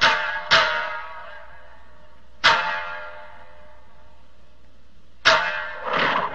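Satsuma biwa struck hard with the plectrum in spaced single strokes, each ringing out and fading: one at the start, one half a second later, one about two and a half seconds in, and a heavier pair near the end.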